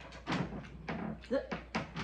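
Talk at a meal table, with a few short, sharp sounds scattered through it.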